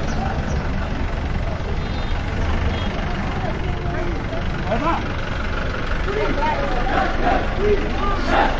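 Engine of a police jeep running at low speed close by, a steady low rumble, with scattered shouting from a crowd of protesters that becomes more frequent in the second half.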